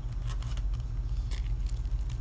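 A steady low hum with faint clicks and rustling of small objects being handled.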